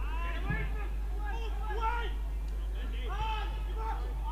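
Footballers' voices calling out to each other on the pitch, several overlapping shouts heard from a distance over a steady low hum.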